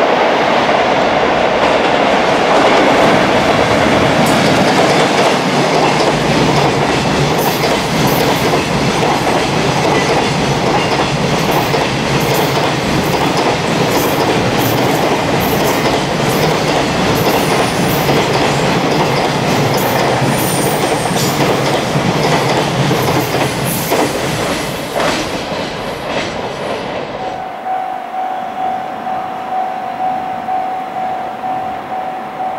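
A long container freight train rolling past at speed: a dense, steady rumble of wheels on rail, with repeated sharp clicks as the wagons cross rail joints. Near the end the train sound breaks off into a quieter scene with a steady high tone.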